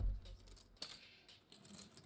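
Poker chips clicking together a few times as they are handled at the table, with a low thump at the start.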